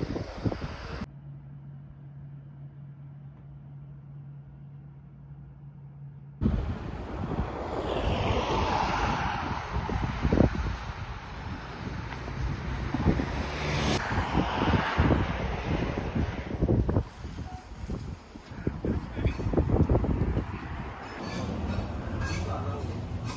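Wind buffeting a phone microphone beside a road, with traffic passing. Early on there is a few-second quieter stretch of a steady low hum. The wind noise starts suddenly about six seconds in and stays loud, with gusts and knocks.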